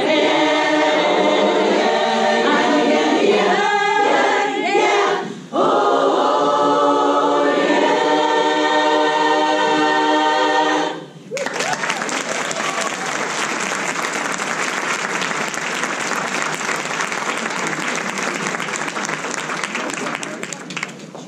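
Women's a cappella chorus singing, finishing on a long held chord that cuts off about halfway through. Applause follows straight after the cutoff and carries on.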